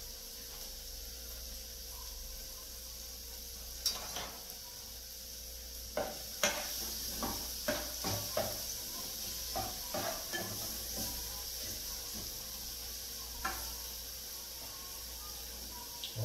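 Crushed garlic sizzling in a little oil in a small saucepan, with a steady hiss throughout. A metal spoon stirs it, scraping and clinking against the pan in a run of sharp taps from about four seconds in, thickest through the middle.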